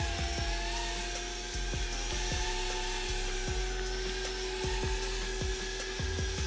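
Steady electric-motor whine holding one pitch that creeps slightly upward, with scattered light ticks over it.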